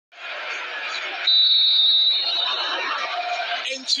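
A referee's whistle blows one steady, high blast about a second in, the signal for the penalty kick to be taken, over steady stadium background noise with distant voices.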